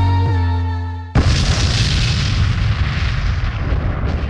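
Electronic soundtrack music with a deep held bass fades out, then about a second in a cinematic boom hits and its rumbling wash trails off slowly.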